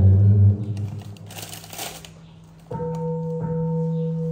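Buddhist chanting: a low chanting voice fades out in the first half-second, a brief rustle follows, then a long steady chanted note starts abruptly about two-thirds of the way through.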